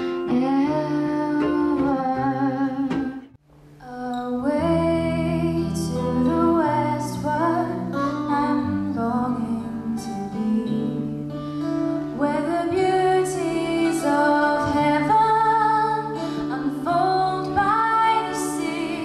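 A woman singing with acoustic guitar accompaniment. About three seconds in the sound drops out for a moment, and a different performance of voice and acoustic guitar begins.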